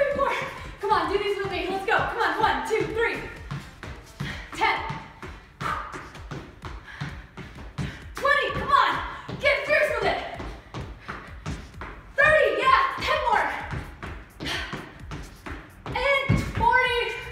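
Sneakered feet landing on a hardwood floor in quick, repeated thuds as a woman hops side to side doing Heisman jumps, with her voice over them in several stretches.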